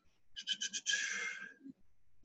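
A man breathing close to the microphone: a few quick, short breaths, then one longer breath.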